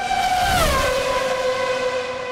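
Engine sound effect under a logo sting: a high, whining engine note that drops in pitch about half a second in and then holds steady, over a low rumble.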